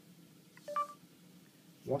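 Google voice search's start-listening chime on an Android phone: two short electronic beeps, the second higher, as the microphone opens for a spoken query.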